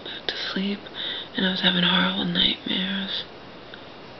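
A woman talking softly, close to a whisper, for about three seconds, then stopping.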